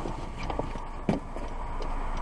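Car cabin at a standstill with the engine idling, a steady low hum, broken by two short sharp clicks about half a second apart.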